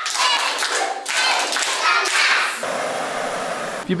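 Clapping from a group, with children's voices mixed in.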